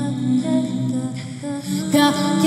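Layered looped female voices humming sustained low notes as an a cappella backing, with a higher sung note coming in near the end.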